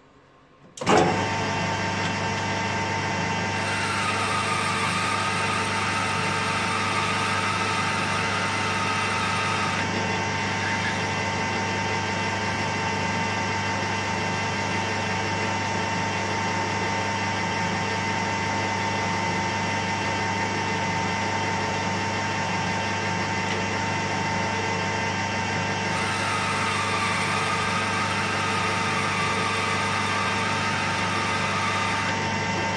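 Small metal lathe switched on about a second in, its motor and drive running steadily with a low hum and a steady tone. A higher wavering whine joins from about 4 to 10 s and again from about 26 s.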